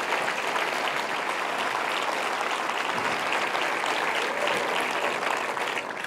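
Large audience applauding steadily, a dense mass of clapping.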